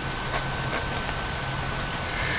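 Steady hiss of background noise with a faint, thin high whine running through it.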